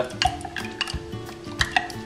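A metal spoon stirring a thick, gelling glue-and-borax mixture (flubber) in a glass mason-jar mug, with irregular clinks of the spoon against the glass, several a second.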